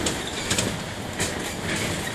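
Moving bus heard from inside the cabin: a steady running and road noise with short rattles and knocks from the bodywork and windows, about half a second and a second and a quarter in.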